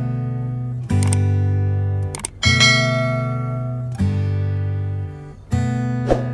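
Background music: acoustic guitar chords struck about every second and a half, each ringing on and fading before the next.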